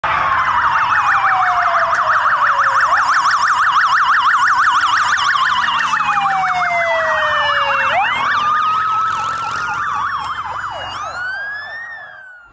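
Several police sirens of a motorcade escort sounding together: a fast warbling yelp over slower wails that fall away and sweep back up. They fade somewhat near the end.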